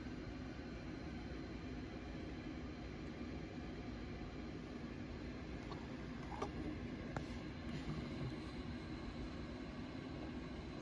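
Steady low background hum of room noise, with a few faint clicks about six and seven seconds in.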